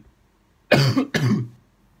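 A man coughing twice in quick succession, loud and harsh, about a second in, from a dry, irritated throat.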